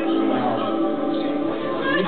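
Dance music playing over a sound system, with long held notes.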